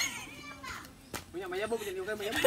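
Voices of people talking, children among them, coming in from about a second in, with a sharp knock at the start and another about a second in.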